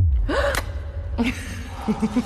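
A woman gasps sharply about a third of a second in, over a sudden deep boom and a low rumbling drone, with another short breathy vocal sound about a second later.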